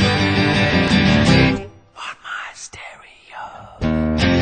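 Acoustic guitars strumming chords in a live band performance; about one and a half seconds in the band stops abruptly, leaving about two seconds of faint voices, and the strummed chords come back in just before the end.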